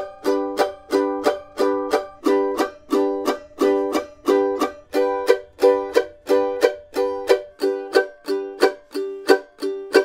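Beginner A-style mandolins playing the bluegrass chop, short damped chord strokes repeating at a steady pace. The instrument changes partway through as one mandolin is cut to the next.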